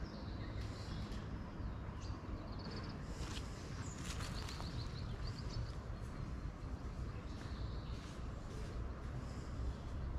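Small birds chirping in short, rapid runs of high notes several times, over a steady low rumble.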